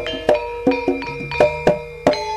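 Javanese gamelan playing: metallophones struck in a quick, irregular run of ringing notes at several different pitches, with hand-drum strokes mixed in.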